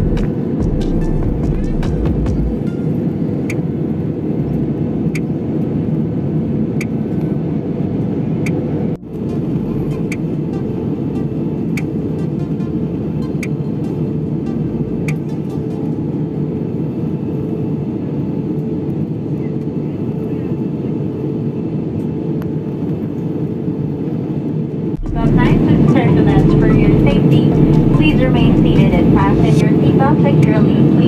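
Steady cabin drone of a jet airliner in cruise, the low rushing noise of engines and airflow heard from a window seat. The sound cuts twice, about nine seconds in and again near 25 seconds, and after the second cut it is louder, with voices over the drone.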